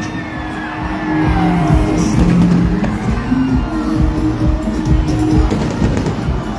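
Loud music playing, mixed with fireworks going off overhead, with low thuds and falling whistling glides among the music.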